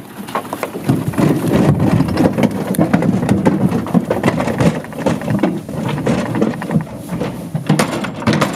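Bison hooves thumping and clattering in a livestock truck as the animals crowd aboard: a loud, dense, irregular run of knocks.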